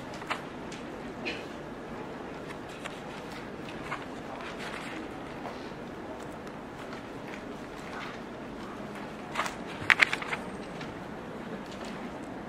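Background room noise of a lecture room during a lull, with scattered light clicks and knocks; a quick run of sharp clicks about ten seconds in is the loudest sound.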